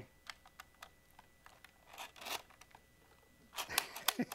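Faint clicks and rustling from hands working the controls of an old 4x5 Speed Graphic press camera, fumbling to take a picture, with a brief rustle about two seconds in and sharper clicks near the end.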